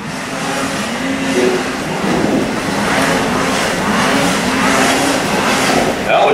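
Racing snowmobiles on a snocross track, their engines revving with the pitch rising and falling several times over a steady haze of track noise.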